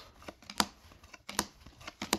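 Upper Deck hockey trading cards being flipped through by hand, each card slid off the front of a small stack to the back with a short sharp snap; a few snaps in all, the two loudest a little under a second apart.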